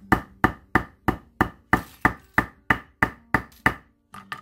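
Nylon-faced jeweller's hammer striking metal wire against a granite slab, about a dozen even taps at roughly three a second. The wire's tip is being flattened and spread into a paddle.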